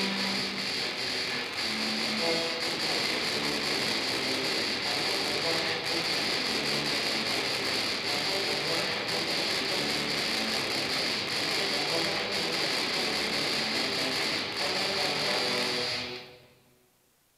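A tuba and euphonium quartet playing metal-style music in a dense, loud, continuous texture; the piece stops suddenly at the very end.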